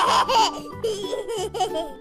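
A baby laughing in a run of high giggles, loudest in the first half second, over light children's background music.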